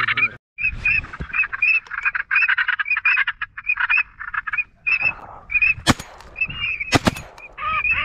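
Ducks calling in a fast, continuous run of short repeated quacking notes. Two sharp, loud cracks about a second apart near the end stand out above the calls.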